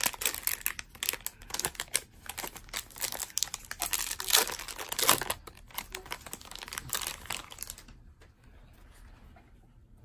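Wrappers of 2019 Topps Allen & Ginter baseball card packs being torn open and crinkled in the hands: a dense run of irregular crackling that dies away about two seconds before the end.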